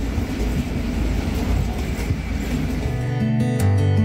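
Steady low rumble of airport terminal noise, then acoustic guitar music comes in about three seconds in.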